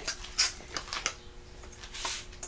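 A metal spoon clinking and scraping against a stainless steel mixing bowl while cauliflower fritter batter is stirred: a few light clinks, most in the first second.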